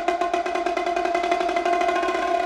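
Percussion ensemble playing a fast, even roll that rings on a steady, sustained pitch.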